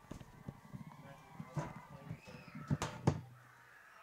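Faint field-side ambience at a football game between plays: distant voices and a few sharp knocks, two of them close together near the end.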